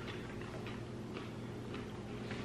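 Faint chewing of a crunchy chocolate-and-nut snack bar: soft crunches about twice a second over a low room hum.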